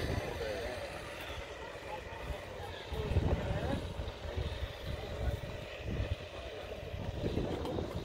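Outdoor drag-strip staging-lane background: low uneven rumble from wind on the microphone and distant car engines, with faint voices of people nearby.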